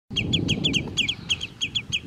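Agitated waders giving alarm calls: a rapid run of short, falling notes, about seven a second and often in pairs, over a low rumble.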